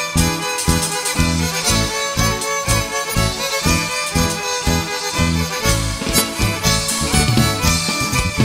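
Tierra Caliente band playing an instrumental opening: two violins carrying the melody over bass guitar, guitar and drums, with an even bass beat about twice a second.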